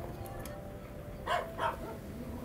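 A puppy gives two short barks, one right after the other, about a second and a half in.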